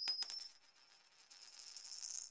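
Intro title-card sound effect: a bright, high, shimmering chime with a few quick clinks. It fades out within the first second, then swells back up toward the end.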